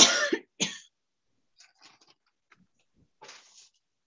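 A woman coughs twice in quick succession, the first cough the louder. Only a few faint small sounds follow, with a short soft hiss about three seconds in.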